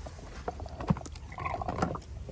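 Corroded metal pistol being lowered into a plastic tub of water: a few small splashes and sharp knocks as it goes in and settles against the tub, the loudest knock about a second in.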